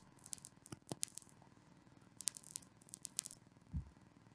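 Faint, scattered small clicks and rustles at a desk with a close microphone, with a soft low thump near the end, over quiet studio room tone.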